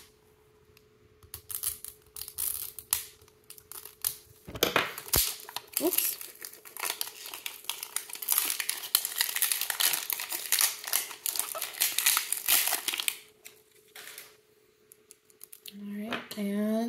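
Plastic shrink-wrap sleeve being slit and peeled off a plastic capsule ball by hand: crackly crinkling and tearing in many short bursts, nearly continuous from about six seconds in and thinning out near the end.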